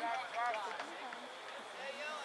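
Indistinct, distant voices calling out over a steady outdoor hiss, a short call about half a second in and another near the end.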